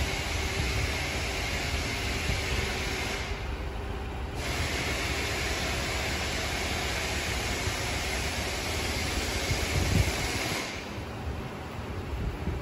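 A steady loud hiss over a low rumble. It stops for about a second around three seconds in, resumes, and cuts off again shortly before the end, with a single knock just before that.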